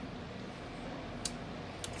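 Quiet, steady background ambience with two faint short clicks, one a little past the middle and one near the end.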